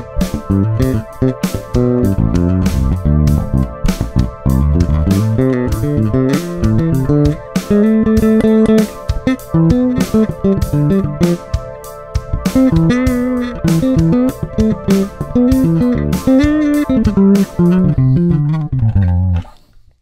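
Electric bass guitar improvising melodic motifs in D minor pentatonic with the added natural sixth (the Dorian sixth), over a backing track of programmed drums and sustained chords: A minor 7 over a D groove. The music stops shortly before the end.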